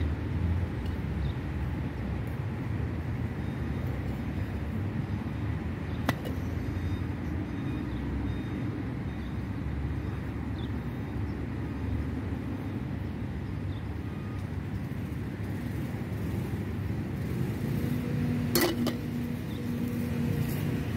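Steady low outdoor rumble, with a sharp click about six seconds in and another near the end.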